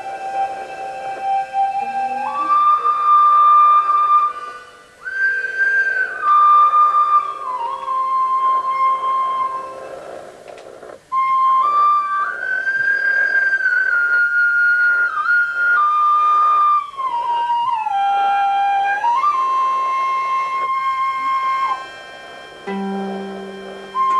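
Slow improvised melody on a small flute-like wind instrument: long held notes stepping up and down in pitch, with a couple of short breaks.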